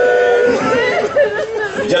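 A man's voice reciting into a microphone through a PA in a drawn-out, chanted style. A long held note gives way to quicker, rising and falling speech about half a second in.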